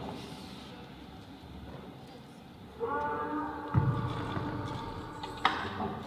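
A dance routine's soundtrack playing in a hall: a quiet stretch, then from about three seconds in a held pitched note, with a low thud just under a second later and a sharp hit near the end.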